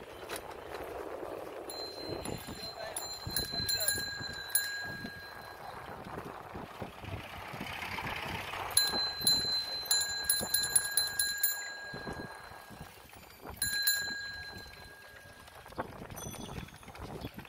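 Bicycle bells, of the kind fitted to cycle rickshaws, ringing in rapid trills in three bouts, the middle one longest, over general street noise.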